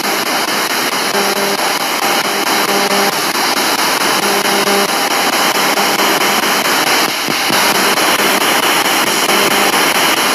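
Spirit box (ghost box radio) rapidly sweeping the FM band: a loud, steady static hiss with brief snatches of broadcast tone breaking through and cutting off as it scans.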